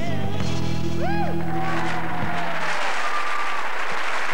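Live rock band and singer end a heavy-metal-style number on a held final chord with a last sung note, which stops a little over halfway through. Audience applause breaks out just before the music stops and carries on.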